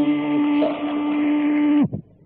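Live Carnatic music in raga Kalyani: a long, steady held note with its accompaniment, which slides sharply down and stops near the end, leaving a brief lull.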